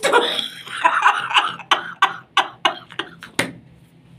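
A man laughing: breathy laughter that breaks into a run of short, sharp bursts, about four a second, stopping about three and a half seconds in.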